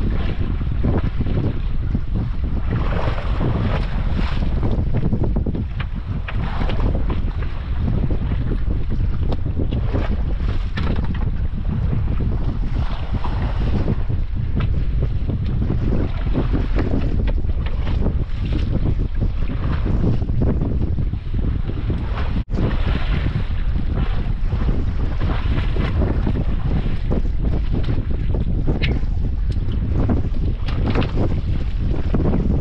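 Steady wind rumbling on the microphone, with sea water lapping against the hull of a small wooden boat.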